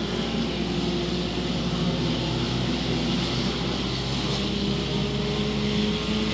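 Several front-wheel-drive dirt-track race cars running at speed around the oval together, their engines making a steady mixed drone. One engine's note creeps up slightly near the end.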